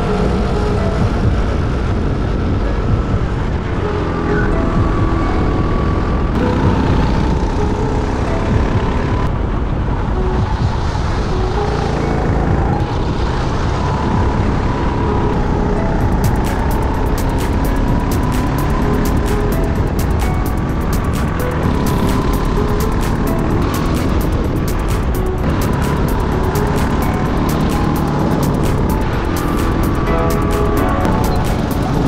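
Racing kart engine heard from the driver's seat at racing speed, its pitch rising and falling as the kart accelerates and brakes through the corners.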